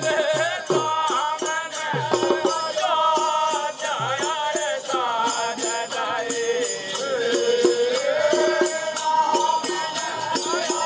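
Bundeli Rai folk music: a waist-hung barrel drum beaten in a fast, dense rhythm with rattling percussion, under a voice singing long, wavering, gliding notes.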